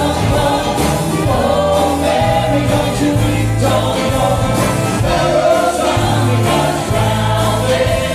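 A live folk band playing a gospel song: several voices singing together over acoustic guitars, bass and a steady beat.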